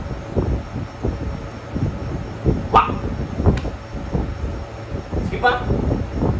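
A dog barking: two sharp barks a little under a second apart about halfway through, and a shorter call near the end.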